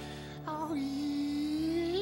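A ventriloquist singing in his female puppet's voice over a recorded backing track: after a brief pause, one long held note that slides slowly upward toward the end.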